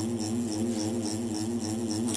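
Tattoo machine buzzing steadily as it works over practice skin, its pitch wavering slightly with the load of the needle.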